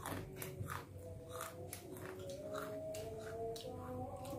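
Faint sounds of eating by hand: soft ticks and taps of fingers and food on plates, with some chewing. Under them runs a faint, slowly wavering drawn-out tone.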